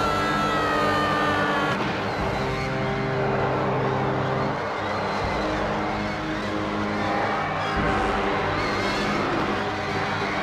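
Film soundtrack: a man's scream sliding down in pitch over the first two seconds, then a sustained orchestral score over a dense low rumble.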